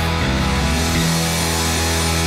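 Grunge rock band playing an instrumental passage of the song on electric guitar, bass guitar and drums, with no vocals. The bass line changes note about a quarter second in and again at about one second.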